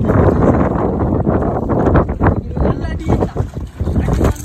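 Wind buffeting the microphone on a small boat at sea, with people's voices over it.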